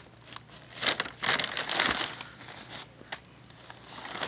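Irregular crinkling and rustling close to the microphone, with a short click near the end: handling noise rather than speech.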